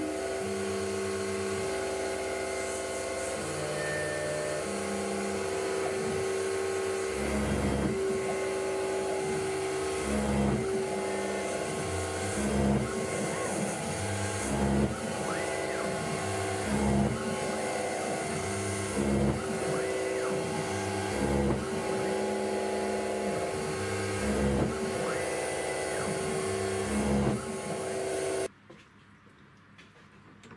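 Grizzly G8689Z CNC mini mill cutting aluminium plate: a steady spindle whine that swells about every two seconds as the cutter repeats its cuts. It stops abruptly near the end.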